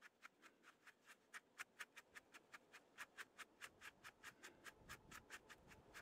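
Faint, rapid ticking, about five clicks a second, from a hand-held seed sifter being shaken and bounced over a tub: lettuce seed and chaff rattling in the sifter as the chaff is winnowed out.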